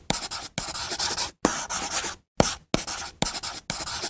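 Chalk writing on a chalkboard: a run of about seven scratching strokes, each starting with a sharp tap, with brief pauses between them.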